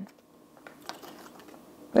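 Faint clicks and small rattles of a plastic seasoning bottle being handled, with one sharper click about a second in.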